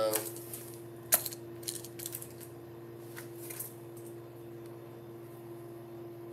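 A sharp click about a second in, then a few lighter clicks and rattles: a fishing lure snapping onto the magnetic drop zone on the lid of a Plano tackle bag and being handled there.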